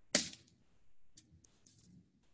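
A single sharp, short burst of noise just after the start that dies away quickly, followed by a few faint ticks in the second half.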